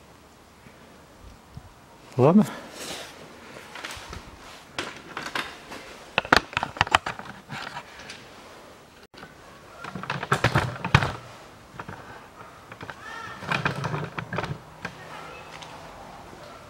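Indistinct voice sounds with scattered sharp clicks and knocks, most of them between about two and eight seconds in.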